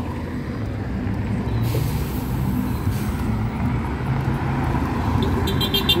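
Road traffic: cars passing by with a steady rumble of engines and tyres. A brief hiss comes about two seconds in, and a rapid run of high ticks near the end.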